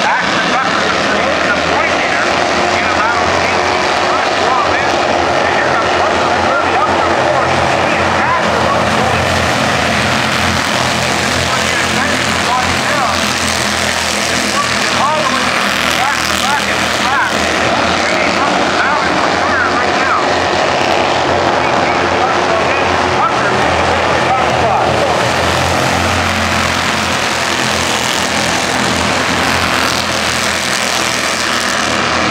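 A pack of Bandolero race cars with small single-cylinder Briggs & Stratton engines running flat out around a short oval, a steady loud buzz with short rises and falls in pitch as cars pass and lift for the turns.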